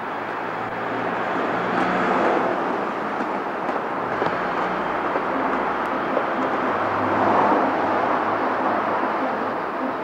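Steady outdoor rumble with a low hum underneath, swelling about two seconds in and again around seven seconds in.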